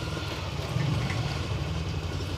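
Motorcycle engine running steadily while the bike rides slowly, a low rumble.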